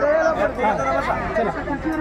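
Several people talking at once, overlapping chatter with no single clear speaker.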